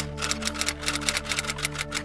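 Typewriter-style typing sound effect, a fast run of clicks about ten a second, over background music with steady held notes.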